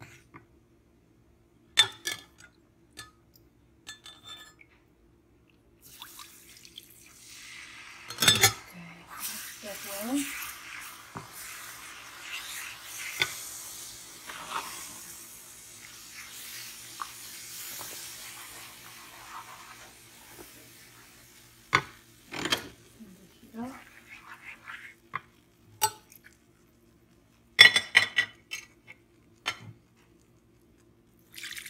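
Wooden spoon stirring and scraping a browning butter-and-flour roux in a nonstick pan, with scattered knocks and clinks of the spoon against the pan, the loudest about eight seconds in and a quick cluster near the end. A hiss runs through the middle stretch.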